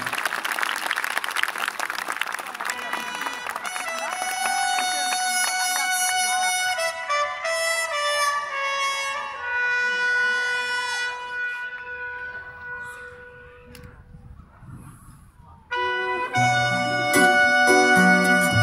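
Audience applause fills the first few seconds. A keyboard then plays slow, held notes that fade away. About sixteen seconds in, the full band comes in loudly with guitar, bass and drums.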